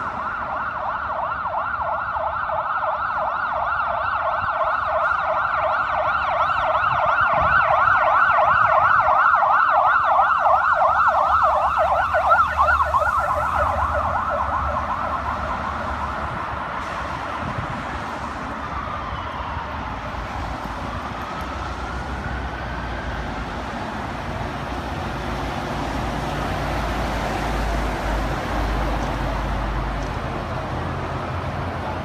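Vehicle siren in a fast yelp, warbling about four times a second, growing louder then fading away about halfway through. Afterwards a slower siren sweep rises and falls over the low rumble of passing vehicles.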